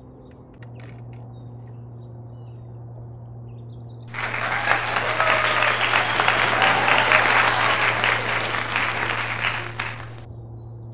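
Applause sound effect: a crowd clapping, starting suddenly about four seconds in and cutting off sharply at the end. Before it, a few faint bird chirps over a low steady hum.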